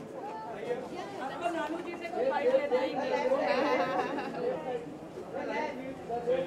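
Crowd chatter: several voices talking over one another, loudest from about two seconds in until past the middle.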